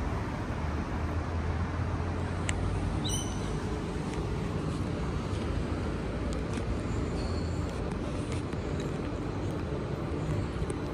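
Steady city traffic rumble, with a few brief high chirps over it.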